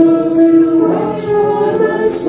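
A group of voices singing together in church, holding long notes; the notes change about a second in.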